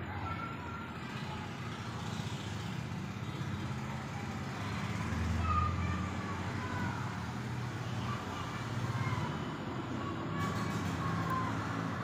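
Steady low rumble of vehicle traffic noise, swelling briefly around the middle, with faint short high chirps over it.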